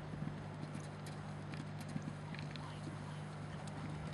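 Hoofbeats of a horse cantering on turf, heard faintly from a distance as scattered light thuds over a steady low hum.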